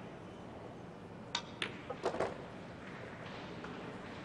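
A pool shot: the cue tip strikes the cue ball and the balls knock together, four sharp clicks over about a second, against quiet arena ambience.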